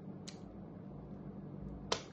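A pause between a woman's sentences: faint room hum, a small click about a quarter second in, and a short, sharp intake of breath near the end, just before she speaks again.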